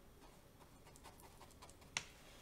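Near silence: room tone with a few faint soft ticks, and one sharper click at the very end.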